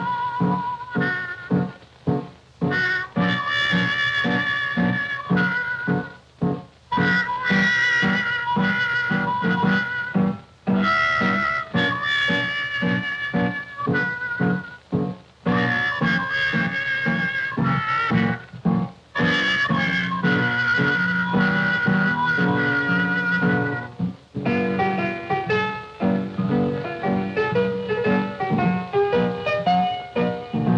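1929 jazz orchestra music on an RCA Photophone optical soundtrack: a sustained, reedy lead melody over a steady beat. About three-quarters of the way through, the texture changes to quicker, shorter notes.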